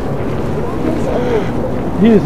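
Wind buffeting the microphone as a steady low rumble, with faint voices of people talking in the background.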